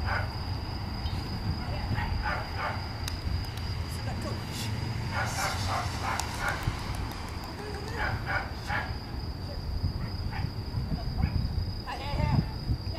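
A dog barks in short bursts several times, about 2, 5 and 8 seconds in, over crickets trilling steadily on one high note. A handler gives short wordless cues ("ah, ah") at the very start.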